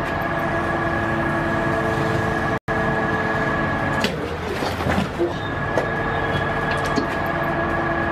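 A steady mechanical hum with several fixed pitches, cut out for an instant about two and a half seconds in and giving way to rougher, irregular noise for a couple of seconds in the middle before returning.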